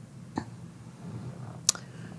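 Quiet room tone with two faint, brief clicks, the second sharper and louder near the end.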